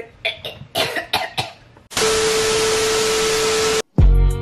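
A burst of static-like hiss with a single steady tone under it, lasting nearly two seconds and cutting off suddenly: a video intro transition sound effect. It is the loudest thing here, and it comes after a few short, sharp sounds in the first two seconds.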